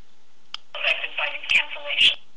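Tinny sound from a mobile phone's small loudspeaker, starting about three quarters of a second in and lasting about a second and a half, with a couple of sharp clicks.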